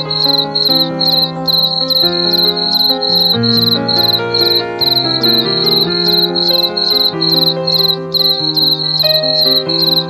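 Cricket chirping in a steady, even rhythm of about three short high chirps a second, over soft background music of slow sustained notes.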